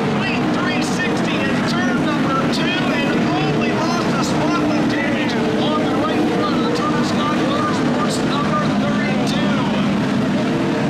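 A field of NASCAR Camping World Series race trucks running laps on a dirt oval, their V8 engines blending into a loud, steady drone, heard from the grandstand with spectators talking nearby.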